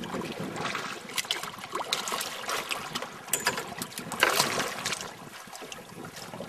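Seawater lapping and splashing against the side of a boat, uneven and choppy, with a louder rush of water about four seconds in.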